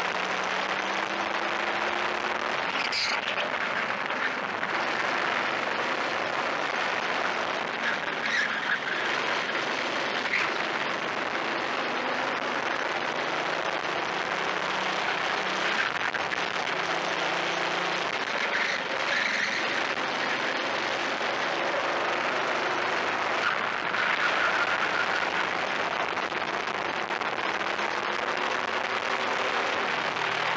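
Onboard sound of a racing kart's engine being driven hard around a track, its note slowly climbing along the straights and dropping away into the corners, under a steady rush of wind on the microphone. A single short knock comes about three seconds in.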